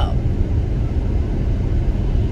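Steady low rumble of road and engine noise inside a moving car's cabin at highway speed.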